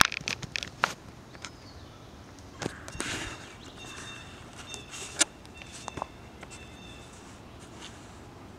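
Irregular sharp clicks and snaps, loudest at the start and about five seconds in. A faint high call at two pitches repeats in short pieces through the middle seconds.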